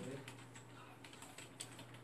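Faint, irregular rapid clicking over a steady low hum.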